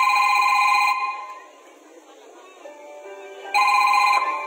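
Telephone ring sound effect from the mime's recorded soundtrack, played over the stage speakers: a loud trilling ring lasting about a second, then a second ring near the end, with a few soft music notes in between.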